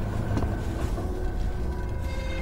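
A steady low rumble with faint held tones above it.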